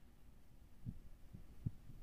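Near silence with a few faint, short low thuds in the second half, from a pen writing on a workbook page.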